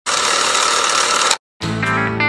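A loud mechanical ratcheting sound effect for about a second and a half, cut off sharply, then after a short gap guitar music starts just before the end.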